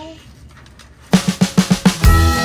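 A quick drum fill of about seven rapid hits starts about a second in, opening a background song; before it there is only faint room sound.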